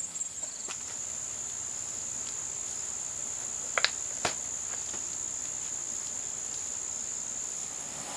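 Insects droning steadily at a high pitch, with a couple of brief clicks near the middle.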